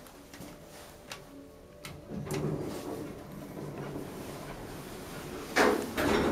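Otis hydraulic elevator's doors sliding shut: a couple of light clicks, then from about two seconds in a low rumbling slide, with a much louder noise starting near the end.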